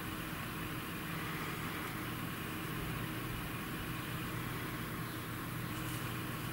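Steady background hiss with a faint low hum, level and unchanging: room tone with no distinct handling sounds.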